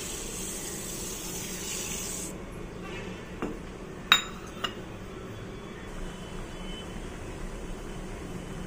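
Granulated sugar poured in a stream into a pan of water, a hiss lasting about two seconds that stops abruptly. A few short, sharp clicks follow a second or two later.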